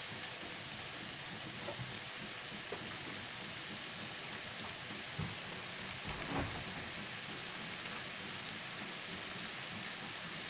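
Sliced beef and onions sizzling in a frying pan, a steady hiss, with a few soft knocks of the spatula against the pan.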